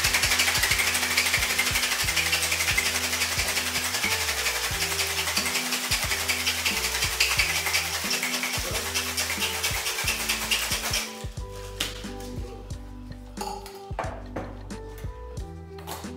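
Ice rattling hard inside a metal tin-on-tin cocktail shaker, shaken continuously for about eleven seconds and then stopping. Background music with a steady bass line plays under it and runs on after the shaking ends.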